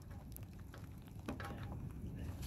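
Faint steady rumble of wind on the microphone, with a few light clicks of a plastic vacuum fuel pump being handled and fitted into place.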